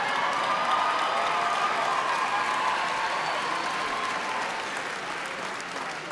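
Large theatre audience applauding and laughing in a dense, steady wash of clapping that eases slightly near the end.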